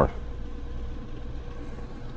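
Window air conditioner running on high cool: a steady, even hum with a faint steady tone, drawing about 480 watts from a small portable power station.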